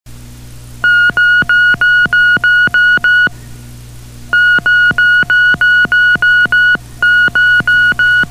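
Electronic song intro: a steady low synthesizer drone, then short high beeps about three a second, in three runs broken by brief pauses.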